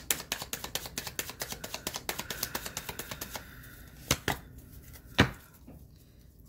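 A deck of tarot cards being shuffled by hand: a fast, dense run of flicking card clicks for about three seconds, then two single sharper clicks about a second apart.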